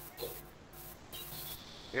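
Steady hiss of background noise from a call participant's open microphone, coming in suddenly and brighter for the first second and a half, then settling to a lower steady hiss.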